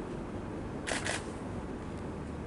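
A camera shutter clicking twice in quick succession about a second in, over steady low room noise.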